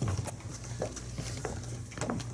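Footsteps on a wooden stage floor: a few light, separate knocks over a steady low hum.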